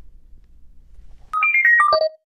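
A short electronic outro jingle: a quick run of clear notes stepping down in pitch, starting about a second and a half in, after a moment of faint room hum.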